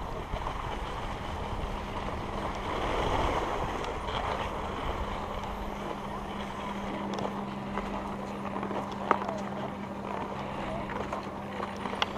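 Skis sliding over packed snow, with wind rushing on the microphone. A steady low hum comes in about halfway through, and there is one sharp click about nine seconds in.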